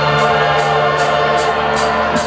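Live rock band heard through a phone's microphone in an arena: held keyboard chords over a sustained bass note, with a steady cymbal pulse of about three strokes a second. The bass note drops out near the end.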